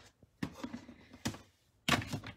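A plastic storage tub being handled as its lid is taken off: a few light knocks and rubs, then a sharper, louder knock near the end.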